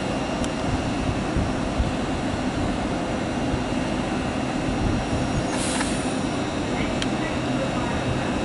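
LNER Azuma train running its equipment with a steady hum at the platform. About two-thirds of the way through, a short hiss of air is heard.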